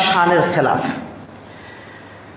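A man's lecturing voice through a headset microphone, ending a phrase with a falling, breathy tail about a second in, then low room tone.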